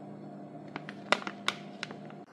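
Plastic packaging bag crinkling and crackling as a hand grips and squeezes it, a cluster of sharp crackles in the second half, over a steady low hum.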